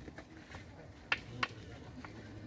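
Two short, sharp knocks about a third of a second apart, a wooden stick tapping the crocodile's bony skull.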